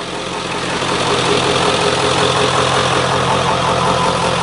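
Ford F-250's 7.3 Power Stroke turbo-diesel V8 idling steadily, with no revving.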